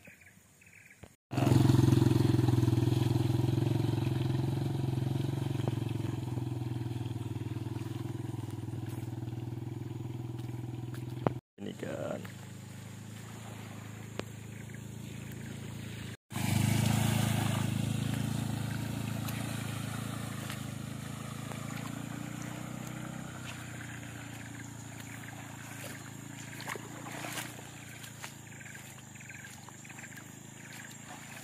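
A motorcycle engine running at a steady pitch, loud at first and fading slowly as it draws away, heard twice with abrupt breaks between.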